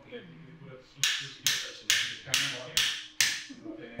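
Metal surgical mallet striking an impactor six times, about two blows a second starting about a second in, tapping a knee-replacement implant into place on the bone. Each blow is a sharp metallic tap with a brief ring.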